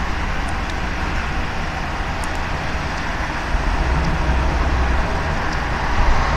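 Steady outdoor rumble of vehicle engines and traffic, with idling emergency vehicles in the lot. A deeper low rumble swells for about a second and a half midway through.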